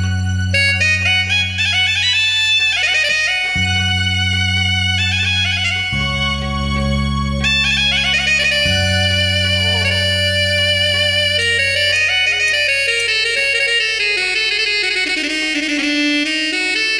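Electronic arranger keyboard playing an instrumental song intro: a reedy, shehnai-like lead melody with quick runs over sustained bass chords that change every few seconds. The low chords drop out about three-quarters of the way through, leaving the lead alone.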